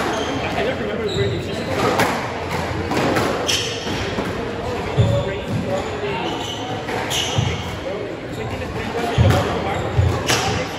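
Squash rally: the ball cracks off rackets and the court walls every second or two, with a couple of low thuds, in a reverberant court.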